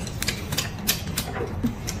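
Eating sounds at the table: a scatter of light, irregular clicks from chewing and chopsticks against a bowl.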